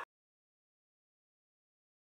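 Dead silence: the sound track cuts out completely, with no room tone at all.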